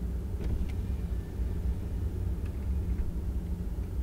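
A vehicle's engine idling, heard from inside the stopped cab as a steady low rumble, with a few faint clicks.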